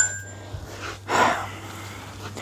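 A brief metallic clink, then a man's heavy breath out through the nose about a second in, over the faint hiss of sand pouring from the bottom of a pressure sandblast pot.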